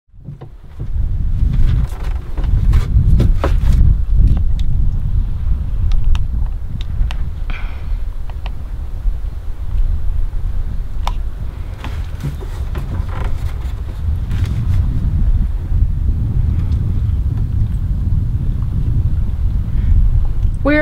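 Wind buffeting the camera's microphone on an open boat deck, an uneven low rumble, with scattered clicks and knocks as the camera is handled.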